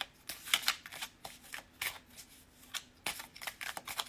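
A deck of tarot cards being shuffled by hand: a string of quick, irregular papery flicks, several a second.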